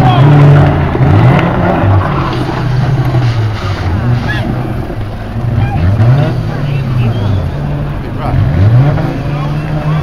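Several banger racing cars' engines revving up and down as they race round the track, the engine pitch repeatedly rising and falling. Loudest in the first second or so.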